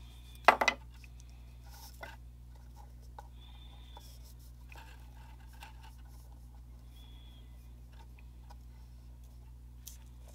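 Small metal tweezers clicking and tapping against a tiny model while thread is worked through a part: a sharp cluster of clicks about half a second in, then a few faint ticks, over a steady low hum.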